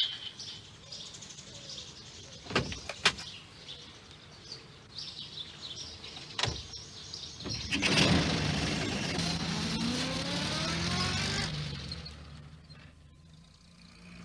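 A small van's engine starts up and pulls away, its pitch rising as it gathers speed, then fades into the distance. Before it, a couple of sharp clicks and faint birdsong.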